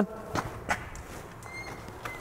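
A few faint footsteps on concrete, with a faint thin high squeak near the end.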